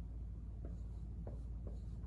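Dry-erase marker writing on a whiteboard: a few faint, short strokes as digits are written.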